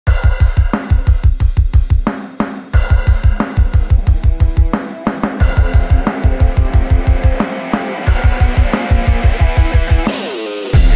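Instrumental electronic music: a fast driving beat of heavy low drum hits with cymbals over held melodic notes, the beat dropping out briefly every two to three seconds.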